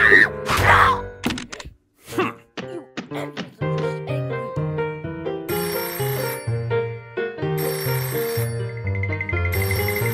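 Cartoon rotary desk telephone bell ringing in repeated bursts about a second long, starting about halfway through, over background music with a bass line. A short vocal sound comes at the start.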